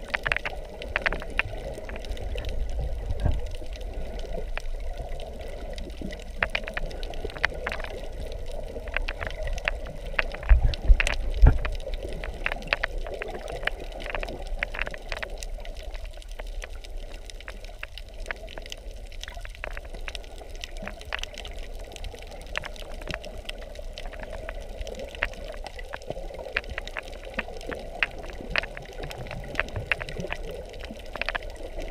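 Underwater sound picked up by a submerged camera: a steady watery rush with many scattered sharp clicks and crackles, and a couple of low thumps, the loudest about eleven seconds in.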